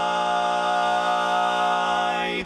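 Four-part a cappella barbershop quartet holding one long, steady chord on the word "sky".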